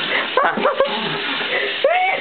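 Faucet water running into a bathroom sink, with short, high yelping vocal sounds over it in a cluster about half a second in and again near the end.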